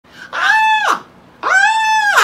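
A woman imitating a bird call with her own voice: two long high calls, each sliding up, holding one pitch and then dropping away, the second starting about a second and a half in.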